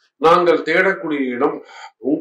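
Only speech: a man talking, starting just after a short pause.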